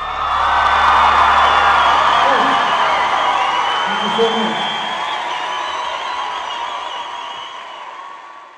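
Audience applauding and cheering at the end of a song, with whoops and high wavering whistles on top; the ovation peaks about a second in and gradually dies down.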